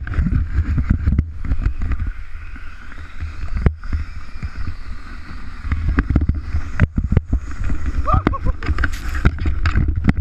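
Sleds sliding fast down a snowy hill: a continuous scraping rumble of runners and plastic on snow, with knocks over bumps and wind on the microphone. A laugh about a second in and a short shout or whoop near the end.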